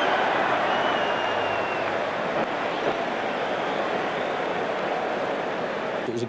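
Steady noise of a football stadium crowd, many voices blended into an even din, with a thin high tone for about a second near the start.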